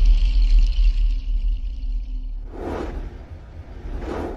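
Sound design of a TV channel's animated logo ident: a deep rumble under a high shimmering tone, fading away over about two and a half seconds, then a short swoosh, and another at the very end.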